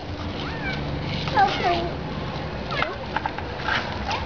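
Short high-pitched voices calling and squealing in sliding pitches, over a steady hiss and faint crackle from a handheld firework spraying sparks.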